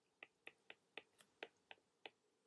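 Faint clicks of a stylus tapping on a tablet screen while handwriting, about seven small ticks at an uneven pace of three to four a second.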